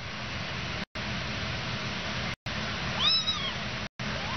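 A kitten mews once about three seconds in, a short cry that rises and falls in pitch, over a steady hiss that cuts out briefly three times.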